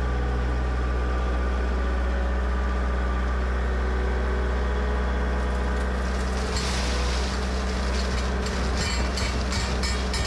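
Loader engine running steadily with a deep drone. From about six and a half seconds in, a gritty hiss with scattered rattles joins it as rock salt pours into the truck's spreader hopper.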